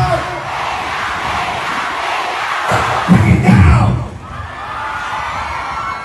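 Large crowd cheering and shouting, a steady roar of many voices, with a few heavy bass beats of the concert music coming back briefly about three seconds in.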